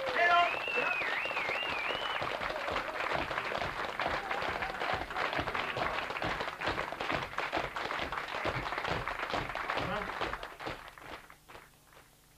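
Concert hall audience applauding and cheering at the end of a song, the clapping fading out near the end.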